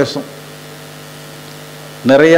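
Steady electrical mains hum in the microphone and sound system, a low, even buzz with several fixed tones, heard plainly once the talking stops.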